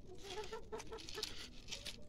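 Cats crunching dry kibble from plastic trays, many small crackly bites, while a hen clucks softly in short repeated low notes.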